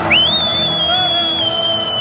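A shrill whistle held close by for about two seconds, gliding up at the start and dropping off at the end, over the steady noise of a packed football stadium crowd.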